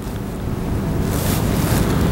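A rushing, wind-like noise of air on the microphone that grows steadily louder.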